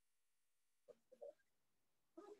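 Near silence, with only a faint, short sound about a second in.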